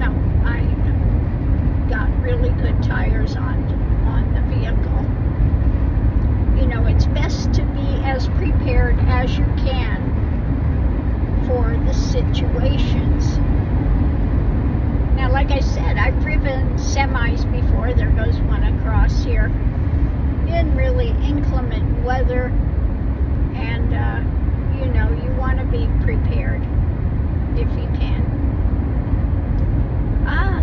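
Steady low rumble of road and tyre noise inside a moving car's cabin, the car riding on new all-weather tyres.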